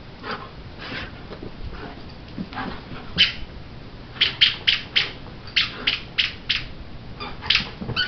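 Greyhound chewing a plush squeaky toy, setting off a series of short, high squeaks, about a dozen in quick runs through the second half.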